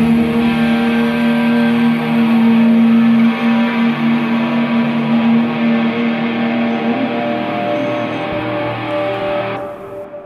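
Closing bars of a live band song: electric guitar through effects, over a long held low note. The music stops abruptly near the end.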